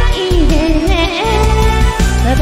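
A man singing in a female voice over a slow rock-ballad karaoke backing track with a heavy bass beat; the sung line dips and wavers.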